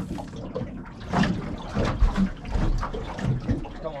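Water slapping and lapping against the hull of a small boat in irregular splashes, with louder slaps about a second and two seconds in.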